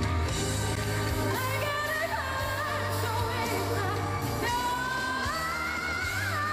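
A woman singing a pop ballad live with full band backing, holding long notes and sliding up to higher ones about a second and a half in and again near four and a half seconds.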